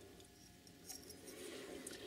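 Near silence with a few faint clicks about a second in and again near the end: a straight razor with G10 scales being turned over and folded in the hands.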